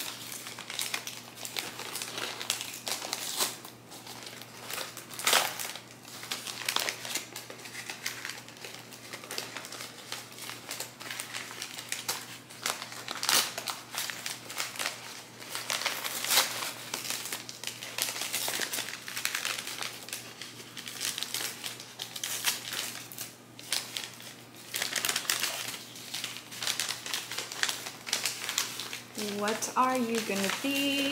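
Brown kraft-paper wrapping crinkling and rustling as it is unfolded and pulled off a potted plant, in irregular crackles throughout.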